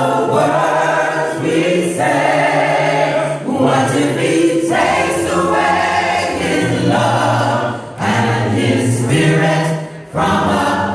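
Large a cappella gospel mass choir singing in full harmony, with no instruments. The chords are held in long phrases, broken by short breaths about halfway through and twice near the end.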